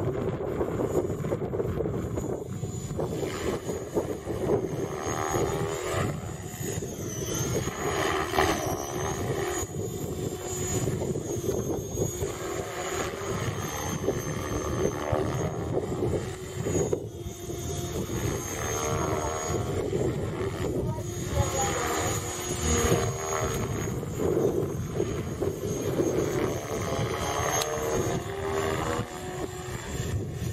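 Align T-Rex 550E electric RC helicopter flying 3D aerobatics: a high, thin motor whine that wavers in pitch and a lower rotor hum, swelling and fading as the model manoeuvres.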